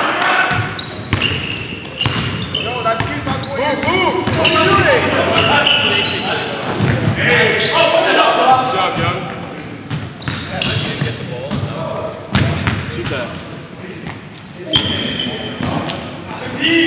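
Basketball game in a gym: the ball bouncing on the hardwood floor and players' shouts and calls, echoing in the large hall.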